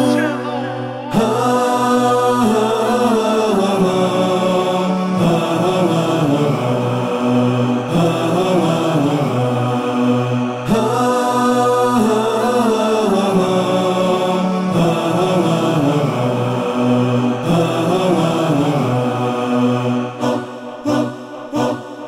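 Music: a wordless chanted vocal melody over a steady low drone, the interlude between verses of an Albanian ilahi (Islamic devotional song).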